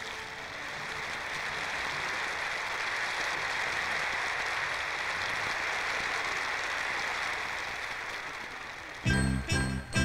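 Audience applause swells and then fades. About a second before the end, music starts with a rhythmic beat of sharp, pitched strikes.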